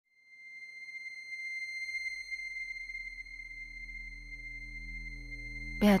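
Ambient intro music: a steady, high, pure tone held over a low drone that swells in during the first second or two.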